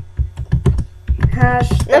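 Computer keyboard being typed on in quick, irregular key clicks. A short spoken word comes near the end.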